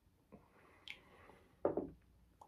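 Faint sipping and mouth sounds as a man drinks neat rum from a tasting glass, with a short, louder breathy mouth sound about one and a half seconds in.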